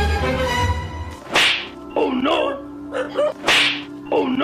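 Edited-in comedy sound effects over background music: the music cuts out about a second in, then come two sharp whip-crack whooshes about two seconds apart, with a short warbling cartoonish sound between them.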